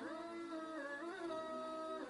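Background music: a gliding, sustained melody line with accompaniment.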